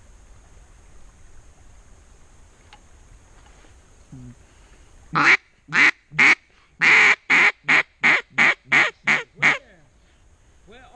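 Mallard duck call blown in a run of about eleven loud quacks, beginning about five seconds in: a few spaced notes, one long one, then quicker notes, in the pattern of a hen greeting call.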